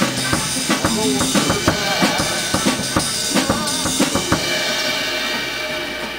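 Drum kit played along to a recorded blues song: bass drum, snare and cymbals over the track. The drumming stops about four seconds in, and the recorded song plays on, getting quieter near the end.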